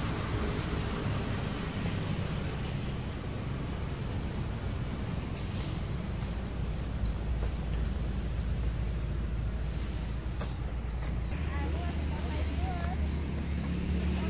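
Steady low rumble of distant road traffic, with a few faint clicks in the middle.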